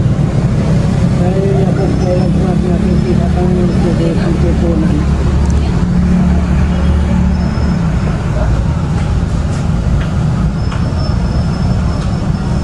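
Steady low rumble of nearby road traffic with engines running, and a faint voice in the first few seconds.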